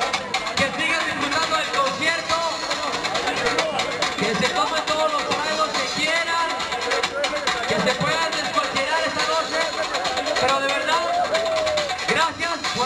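A man's voice amplified through a concert PA system, with music playing underneath.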